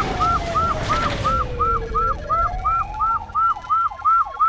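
Siren sound effect in a news intro sting: short, repeated siren chirps about three times a second over a low rumble, with a tone gliding down and then back up.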